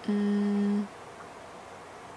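A woman's short closed-mouth "hmm" hum, held at one steady pitch for under a second, a thinking sound while she searches for something to say.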